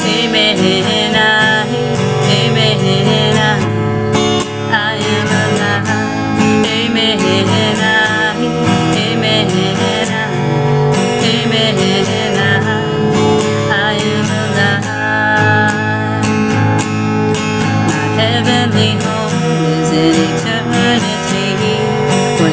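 Acoustic guitar strummed steadily under a woman's singing voice.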